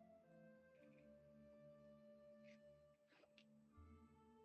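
Quiet background music of steady held notes, with a few faint clicks of pliers on aluminium jump rings around one second in and again near the end.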